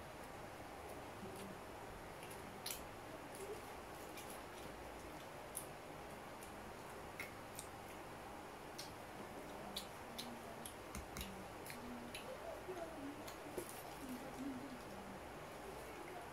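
Quiet eating: scattered small clicks and paper rustles from a paperboard takeout box being handled, with faint chewing.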